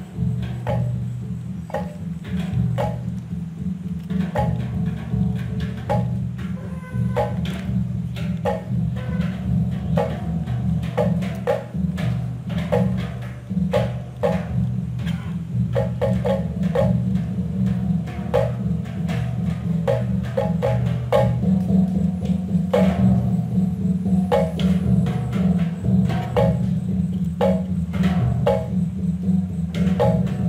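Balinese gamelan music: a low, sustained hum of large hanging gongs under quick, interlocking patterns of short, sharp strokes on small bronze kettle gongs struck with mallets.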